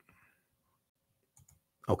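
Two faint clicks of a computer mouse about a second and a half in, in an otherwise quiet room.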